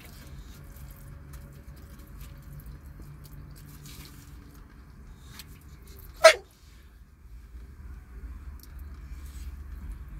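An English bulldog gives one short, sharp bark or yip about six seconds in, over a faint steady low rumble.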